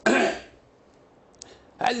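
A man clears his throat once in a short burst, followed by about a second of quiet before speech resumes near the end.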